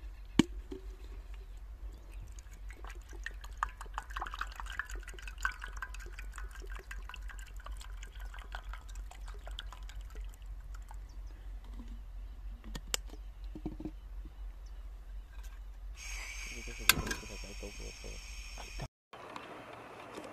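Water bubbling in a small pot of eggs on a portable butane camp stove, with dense crackling pops of the boil over a steady low hum. There are a few sharp knocks, and a high tone holds for about three seconds near the end.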